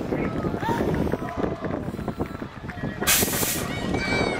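BMX starting gate dropping about three seconds in, with a short burst of hissing air from its pneumatic release, over the chatter and calls of a crowd at the start.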